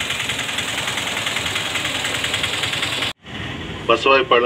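A small engine or motor running steadily with a fast, even buzz, cutting off suddenly about three seconds in.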